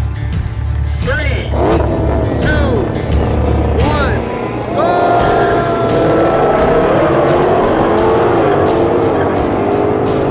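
Two V8 sports cars launching side by side at full throttle about five seconds in and accelerating hard: a Chevrolet Corvette Stingray Z51 with its mid-mounted 6.2-litre V8 and a Shelby GT500 with its supercharged 5.2-litre V8.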